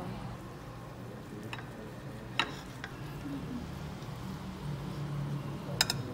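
Knife cutting through a pizza on a ceramic plate, with faint scraping and a few sharp clicks of the blade against the plate, the sharpest near the end. A low steady hum runs underneath.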